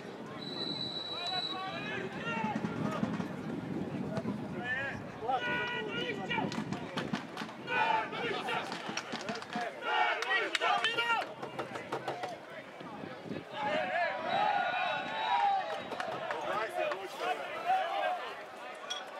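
Referee's whistle blown once for about a second, followed by players and spectators shouting and talking over one another around the pitch, with a few sharp knocks.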